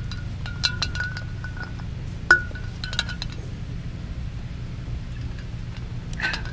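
Wind chimes tinkling: scattered light strikes that ring at one pitch, with one sharper strike a little over two seconds in, over a steady low rumble.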